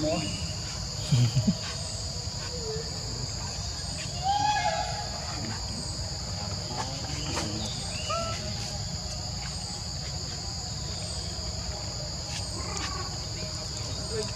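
Steady insect chorus in tropical forest, a continuous high-pitched buzz at two pitches. Two short low thumps about a second in.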